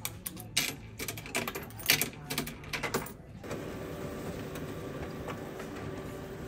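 Coins dropped one after another into an Envisionware coin-op payment box, clinking and rattling for about three seconds. Then the printer starts running with a steady whir as it feeds a printed sheet out.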